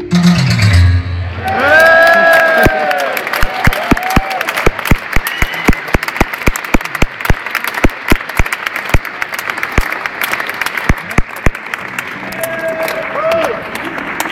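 A concert audience applauding and cheering as a piece ends. The last notes of the music die away in the first second, whoops rise over the start of the clapping, and the claps thin out and stop near the end.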